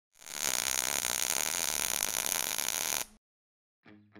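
Intro sound effect: a steady rushing noise lasting about three seconds that cuts off suddenly, followed near the end by the first plucked notes of intro music.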